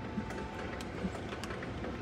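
Store background noise with a few small clicks and knocks from a tall lantern being handled and turned.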